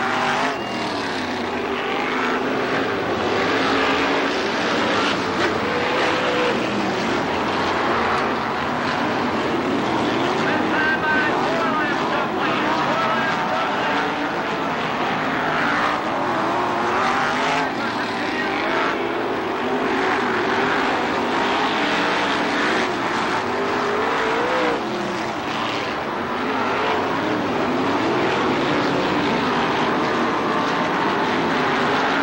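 Several winged sprint cars racing on a dirt oval, their V8 engines rising and falling in pitch as they accelerate down the straights and lift for the turns.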